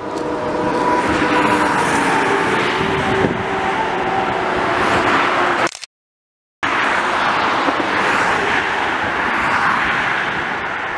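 Road traffic passing close by: car engine and tyre noise, swelling and fading as vehicles go past. About six seconds in the sound cuts off completely for under a second, then the traffic noise resumes.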